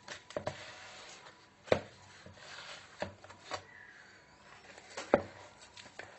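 Hands working a soft, oiled yeast dough in a plastic bowl: soft rubbing and squishing, with a few sharp knocks scattered through, the loudest about two seconds in and near the end.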